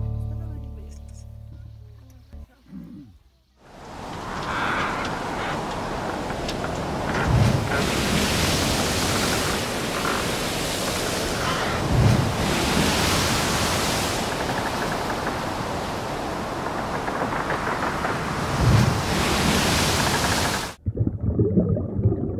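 Background music fading out, then after a short gap a steady rushing noise with a few soft low thumps, which cuts off suddenly near the end.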